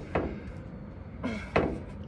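A few short knocks and clunks from a Scania R410's front grill panel being tugged against its clips: one just after the start and two in quick succession about a second and a half in.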